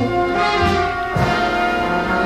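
Instrumental passage of a vintage vocal-jazz recording, with sustained orchestral chords, brass and a moving bass line, and no voice.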